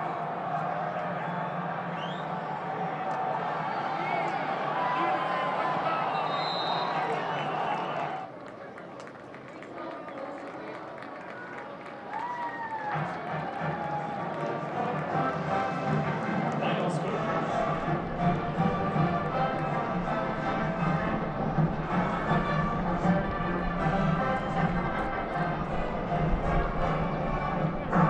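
Football stadium sound: music with crowd voices. It drops quieter for a few seconds about eight seconds in, then fills back up.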